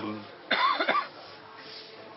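A man coughs once, briefly, about half a second in, then only room tone.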